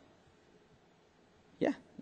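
Near silence for about a second and a half, then a man's short spoken "yeah".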